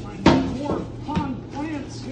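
Cardboard shipping boxes being handled as one is dug out from the bottom of a stack: a sharp thump about a quarter second in, then a lighter knock about a second later.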